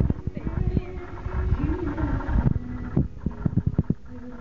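A live band playing, muffled and distorted with heavy low rumble, with a voice rising and falling over it. A quick run of close knocks and bumps breaks through, thickest near the end.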